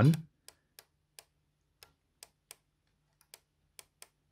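Light plastic clicks from a Technics RS-X101 cassette deck's take-up reel and gear train, turned slowly by hand: about nine clicks at uneven spacing, roughly one every half second, with a faint steady hum beneath. The gear driving the reel is made of soft plastic and has broken teeth.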